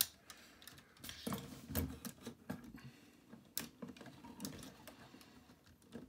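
Faint clicks and rubbing of small plastic parts as a red plastic missile is pushed into the spring-loaded launcher of a Transformers Megatron action figure, with one sharper click about three and a half seconds in.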